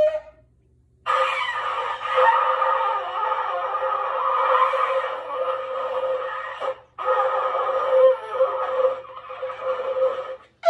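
A child blowing a small ram's-horn shofar: one long breathy note held for about six seconds, a brief break, then a second note of about three seconds. A short shofar note cuts off at the very start.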